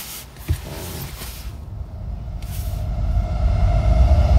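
Low rumble of a car, growing steadily louder, with a single knock about half a second in.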